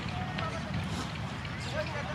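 Busy outdoor ambience: many distant overlapping voices and short calls over a steady low rumble.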